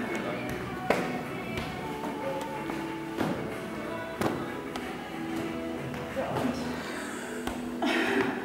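Music playing, with sharp slaps about every second as footballs are caught and thrown by hand, mostly in the first half, and brief voices.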